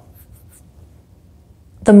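A pause in a woman's speech: quiet room tone with a few faint ticks just after the start, then her voice resumes near the end.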